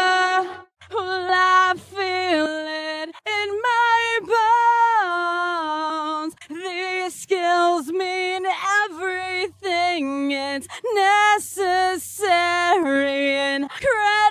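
Solo unaccompanied singing voice sung in phrases with short gaps, played through the Inktomi plugin's modulation effect. It starts on chorus, with reverb added, and is switched to phaser partway through.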